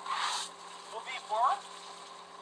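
A short rush of noise lasting about half a second at the start, then a man's brief speech.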